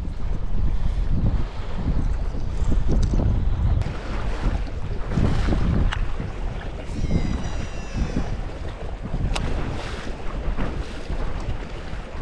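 Wind buffeting the microphone over choppy water lapping against a boat, with a few sharp clicks.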